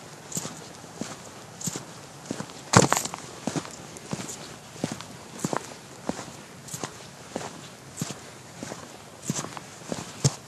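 Footsteps of shoes on a gritty concrete pavement, a steady walking pace of about three steps every two seconds, each step with a scuff of grit. One louder knock comes about three seconds in.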